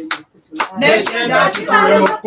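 Voices singing with hand claps keeping time about twice a second; the singing comes in about a second in, after a short pause.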